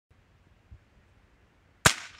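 Pull-string firecracker in a LARP blaster pistol's acoustic system going off once near the end: a single sharp, loud bang with a short echo trailing off.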